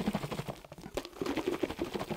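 A glass mason jar of soil, water and a drop of dish soap being shaken hard, the muddy slurry churning inside with a quick, irregular run of small clicks and rattles against the glass.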